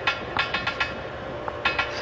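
Rapid metallic tapping in quick groups of sharp knocks, a coded message being tapped out and answered, over a faint steady hum.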